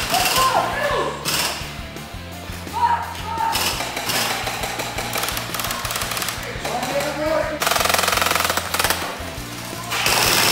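Gel blasters firing on full auto in rapid bursts, a fast mechanical clatter; the longest burst comes about three-quarters of the way in. Background music with a low bass line plays underneath.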